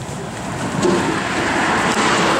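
A road vehicle going by: a rushing noise that swells about a second in and stays loud.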